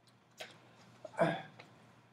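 A man's mouth and breath noises in a pause between sentences: a faint click about half a second in, then a short, sharp hiccup-like intake of breath a little past one second.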